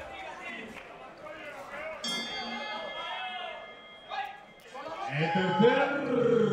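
A ring bell struck once about two seconds in, its tone fading over a second or so, signalling the start of the round, over voices in a large hall. Loud shouting voices near the end.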